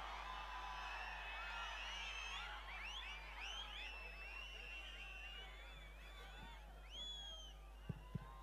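Faint crowd whistling and cheering: many overlapping whistles rising and falling in pitch, thinning out over the last few seconds.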